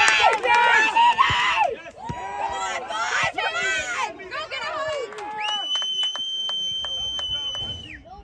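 Shouting from players and sideline spectators, loudest in the first two seconds. About five seconds in comes one long, steady, high referee's whistle blast, held for over two seconds.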